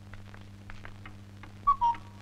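A steady low hum with faint scattered ticks, then, near the end, a brief two-note whistle, the second note slightly lower, trailing into a thin held tone.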